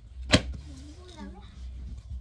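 A single sharp knock about a third of a second in as a spiral notebook is handled, followed by quiet, low voices.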